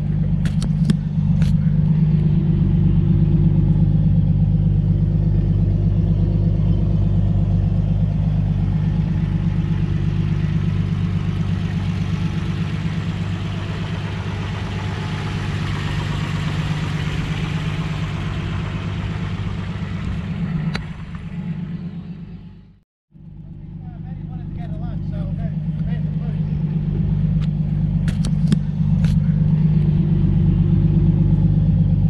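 Holden 202 straight-six engine idling steadily. Near three-quarters of the way through the sound cuts out briefly and then comes back.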